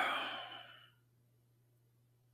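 A man's sigh that fades out within the first second, followed by quiet with a faint steady low hum.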